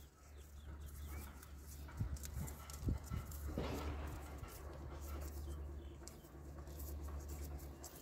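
Handling noise from hands working on the excavator starter motor's wiring: two dull knocks about two and three seconds in, then a short rasp, over a steady low hum.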